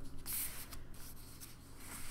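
Cardstock tags and paper booklets rustling and sliding against paper as they are slipped back into a folio pocket, with a brief hissing rub about a quarter second in.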